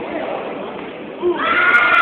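Steady crowd noise at a ringside fight, then about a second and a quarter in a loud, high-pitched drawn-out shout from someone in the crowd or corner, held to the end.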